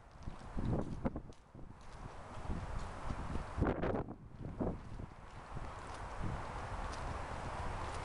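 Footsteps on a paved, partly snowy sidewalk as the person holding the camera walks: irregular thumps and scuffs, strongest in the first half. Wind on the microphone adds a steady rush and rumble in the second half.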